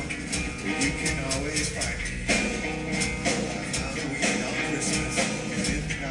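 Live rock band music with a steady beat.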